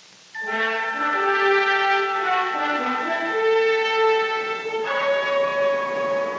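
An orchestral brass fanfare starting abruptly just after the start, with sustained held chords that shift through several notes and a fresh chord entering about five seconds in.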